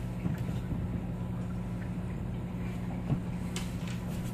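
A steady low electrical hum from running equipment, even throughout, with one faint tap about three seconds in.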